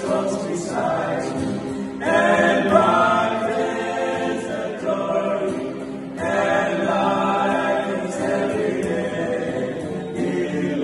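Male vocal group singing a gospel hymn in several-part harmony, accompanied by an acoustic guitar. New phrases swell in about two and six seconds in.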